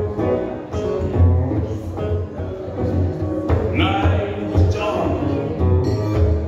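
Live electric guitar played through an amplifier in a blues-rock song, over a steady low beat.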